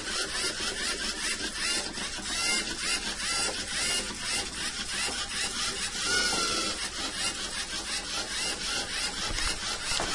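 Lego Mindstorms EV3 robot's electric drive motors and plastic gears whirring as it steers itself along a line, with short whines that rise and fall in pitch as the wheels keep changing speed to correct its course.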